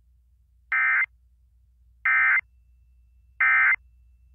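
Emergency Alert System SAME end-of-message data signal: three short, identical bursts of buzzing digital tone, each about a third of a second long and about a second and a half apart, marking the end of the weather alert.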